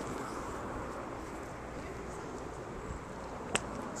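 Steady outdoor background noise with no clear source, and a single sharp click about three and a half seconds in.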